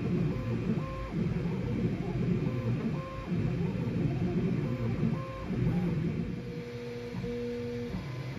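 Voron Trident 3D printer running a print: its stepper motors whine in short steady tones that jump in pitch with each move, over a busy low rumble from the moving gantry. Near the end a pair of tones holds steady for longer stretches.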